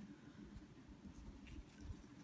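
Near silence: room tone, with a couple of very faint soft clicks.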